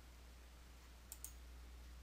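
Two faint computer mouse clicks in quick succession about a second in, over near-silent room tone with a steady low hum.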